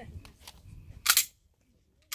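Semi-automatic pistol being unloaded: a few faint clicks, then about a second in a loud, sharp double clack of the slide being racked back and released to clear the chamber.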